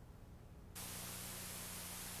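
Steady hiss and low mains hum from a VHS tape transfer with no sound on it. The hiss switches on suddenly about three-quarters of a second in and then holds steady.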